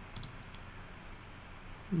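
A few quick, faint computer mouse clicks about a quarter of a second in, as blocks are deleted in a web page; otherwise low room noise.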